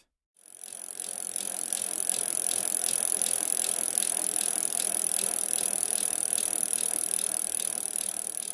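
Bicycle wheel spinning: a steady hiss with regular ticking about three to four times a second, fading in over the first couple of seconds and fading out near the end.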